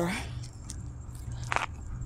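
Siberian husky nibbling at something on the ground: a couple of short, soft crunches, the clearest about one and a half seconds in, over a low steady rumble.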